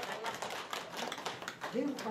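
An audience applauding, a dense patter of separate hand claps at moderate volume, with a brief voice near the end.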